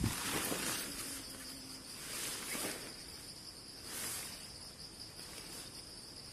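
Steady high-pitched insect chirring, with three soft swells of rustling as a nylon rainfly is pulled over a dome tent and fastened.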